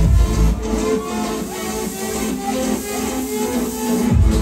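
Electronic dance music played loud over a club sound system. The kick drum and bass drop out about half a second in, leaving the melodic parts in a short breakdown, and the beat comes back in at the very end.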